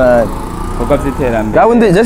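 A man speaking, broken by a pause of about a second in which a motor vehicle engine is heard running in the background.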